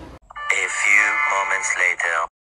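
The narrator voice-over of the 'A few moments later' title card, a comic transition sound clip. It starts after a brief cut to silence and lasts just under two seconds.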